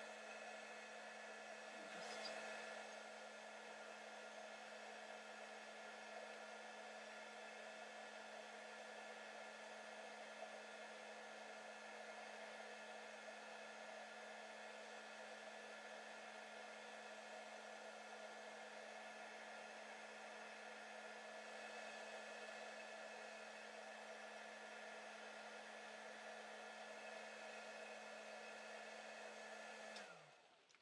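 Heat gun running steadily: a faint, constant fan whir with a low hum, cutting off suddenly at the very end as it is switched off.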